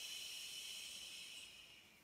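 A woman's long, audible exhale in a Pilates lateral-breathing exercise: a steady soft hiss of breath that fades away near the end.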